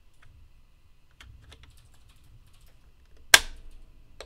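Faint plastic clicks and scrapes as a small controller circuit board is worked into its slot in a 3D-printed plastic chassis, then one sharp, loud snap near the end as the board clicks into place.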